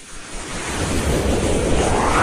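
Whoosh sound effect from a news intro: a rushing noise that swells up from quiet over the first half-second and then holds steady, like wind or surf.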